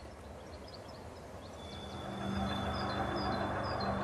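Faint background ambience. A low steady drone fades in and swells about halfway through, with a thin high steady tone and a few short high chirps above it.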